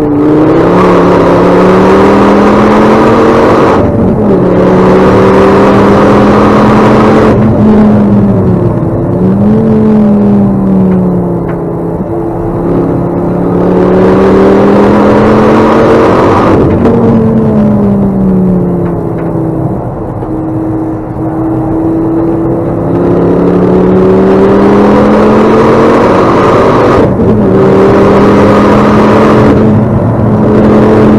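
A Ford Focus ST track car's engine heard loud from inside the cabin while being driven hard on a circuit. The engine note climbs under throttle and drops back sharply several times, as at upshifts. In two quieter, lower-pitched stretches it eases off, as when slowing for corners.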